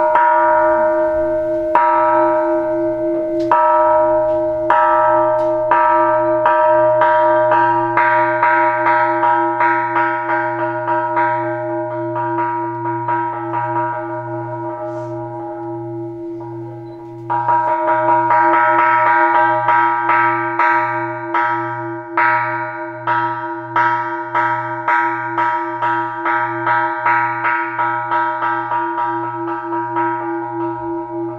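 Small Buddhist temple bell struck over and over, the strokes slow at first and then quickening into a fast run as the ringing fades. A strong stroke about 17 seconds in starts a second quickening series. Each stroke rings on in a long, pulsing hum.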